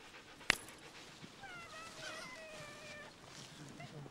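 A dog whining faintly: high, wavering cries lasting about a second and a half. A single sharp click comes about half a second in.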